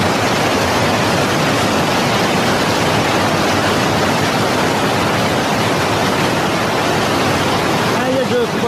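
Fast, muddy mountain river rushing over rocks: a loud, steady rush of water.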